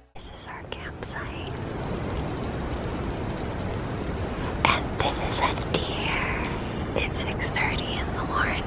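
Hushed whispering in a few short phrases, the clearest a little past the middle and near the end, over a steady hiss of background noise.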